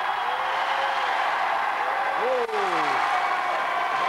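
Studio audience applauding steadily, with a few voices calling out over the clapping.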